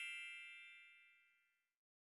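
The tail of a bright chime sound effect ringing out and fading away, followed by silence.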